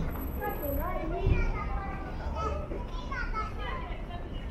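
Children's voices calling out and chattering while they play, mixed with other voices of passers-by over a low background rumble.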